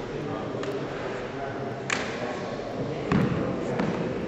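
A sharp smack about two seconds in, then a heavy thud and a knock a second later as a man is taken down onto a wooden gym floor in a knife-defence throw.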